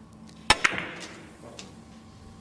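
Russian pyramid billiard shot: the cue strikes the cue ball, and a split second later the cue ball hits the object ball with a sharp click, about half a second in. A faint knock follows about a second later. It is the shot on the last ball needed to win the frame.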